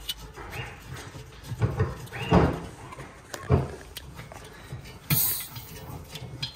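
A hand-tightened gas hose connector being screwed onto a gas bottle's valve: knocks and rubbing from the fitting and rubber hose, with a couple of squeaks that rise and fall, and a short hiss about five seconds in.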